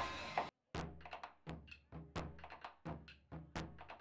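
Japanese taiko drums struck with wooden sticks: deep thuds from the large barrel drum mixed with sharper, higher cracks, in an uneven rhythm of about three to four strokes a second. The sound cuts out abruptly about half a second in, and the drumming starts just after.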